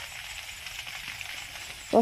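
Distant grass and brush fire crackling: a steady faint sizzling hiss with light irregular crackles.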